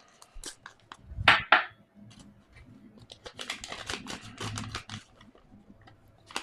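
Paper rustling and crinkling as a sheet is handled close to the microphone, with a quick run of small crackles in the second half.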